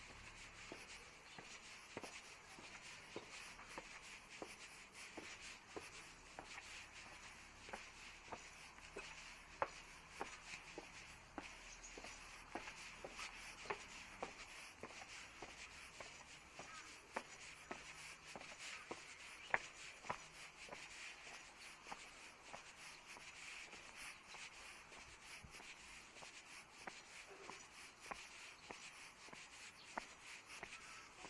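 Faint footsteps of a person walking down a paved alley, short steps about two a second, over a steady low hiss.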